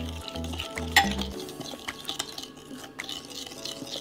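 Metal spoon stirring an oil-and-vinegar marinade in a glass bowl, clinking against the glass several times, loudest about a second in, over background music.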